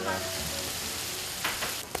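Tofu rolls sizzling steadily on a large flat iron griddle, seared dry without oil. There are a couple of light knocks near the end.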